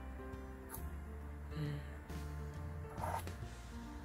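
Background music with held notes over a steady low bass.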